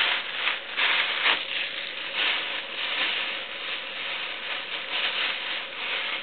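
A thin plastic bag crinkling and rustling as a hand rummages in it, a continuous crackly noise with irregular louder crinkles.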